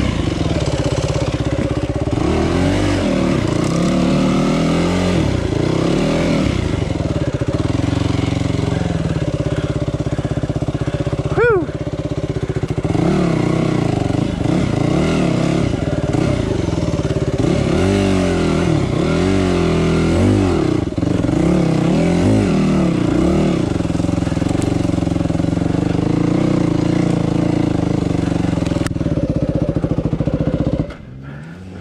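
Dirt bike engine running and revved up and down again and again on a steep, rocky climb, with a short rising squeal about eleven seconds in.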